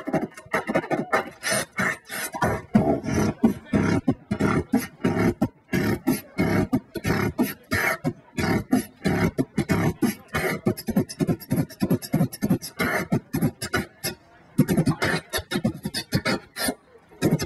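Human beatboxing into a cupped handheld microphone: a fast, unbroken run of vocal kick, snare and hi-hat sounds, with a short break near the end.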